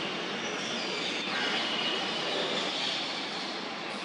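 Steady background noise, an even hiss and rumble like distant traffic, with a few faint high chirps.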